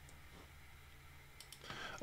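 Near silence, room tone with a low hum, broken by two faint short clicks about one and a half seconds in.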